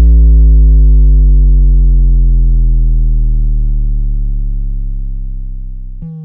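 Closing tail of an EDM dance remix: a deep, sustained synth bass note with its overtones, sliding slowly down in pitch and fading out, with no beat.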